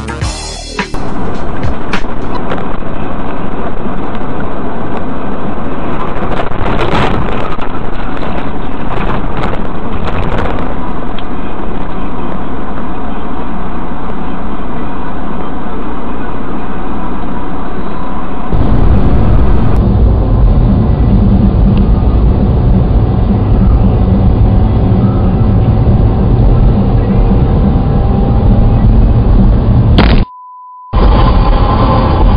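Dashcam recording of a vehicle being driven: steady road and engine noise inside the cabin, turning heavier and louder at about eighteen seconds in.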